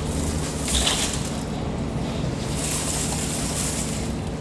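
Crushed ice being tipped from a steel bowl over a fish display, with shushing, rattling showers about a second in and again near the end, over a steady low machine hum.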